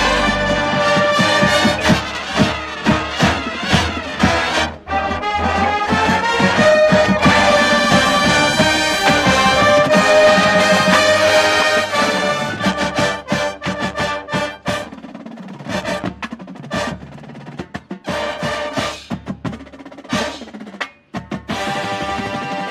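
Drum and bugle corps music: bugles and marching percussion play loud brass chords over drums, then about halfway through the music drops to a quieter passage of sharp, spaced percussion hits.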